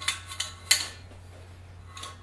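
A trombone being handled and brought up to play: a few sharp metallic clicks and clinks in the first second, the loudest near the middle, over a low steady hum.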